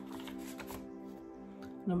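Paper index cards rustling briefly in the first second as the next card is taken from the stack, over steady soft ambient background music.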